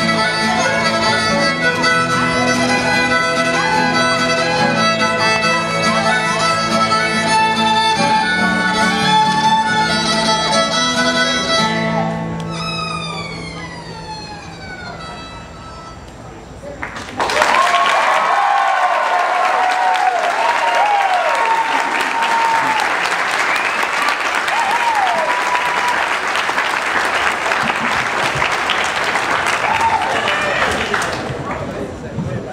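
Bluegrass fiddle playing a fast tune over acoustic guitar backing, ending about twelve seconds in on a long note that slides down in pitch and fades. About seventeen seconds in, an audience breaks into applause and cheering that carries on.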